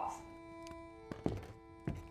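A few short dull thunks as coffee cups are set down on a table, over background music holding long steady notes.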